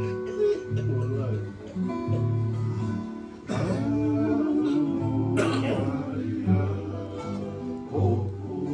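Acoustic guitars strummed together in a steady rhythm, with singing and a rise in loudness from about three and a half seconds in.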